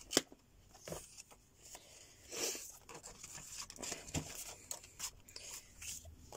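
Paper handling: soft rustles and light taps of a vellum sticker and a card index card being picked up and laid on a cutting mat, with a louder rustle about two and a half seconds in.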